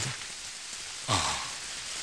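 Steady rain hiss, with a brief low sound about a second in.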